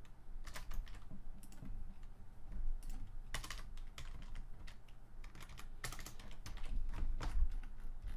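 Typing on a computer keyboard: irregular key clicks, with a louder group about three and a half seconds in and a busier run of keystrokes near the end.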